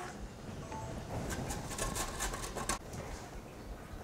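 A carrot being grated on a metal box grater: a quick run of faint scraping strokes, about five a second, that stops a little before three seconds in.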